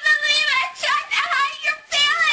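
Young women's high-pitched wordless voices during a play-fight: several long cries that rise and fall in pitch, with short breaks between them.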